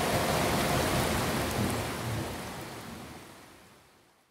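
Steady rain with a low rumble of thunder, fading out evenly to silence.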